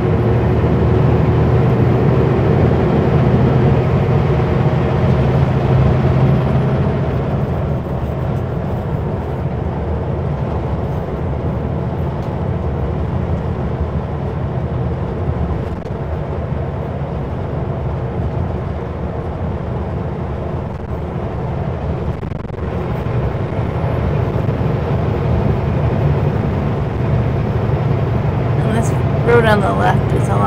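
Kenworth W900L semi truck's diesel engine running on the highway, a steady low drone with road noise. It thins and drops a little about seven seconds in, then builds again in the last third.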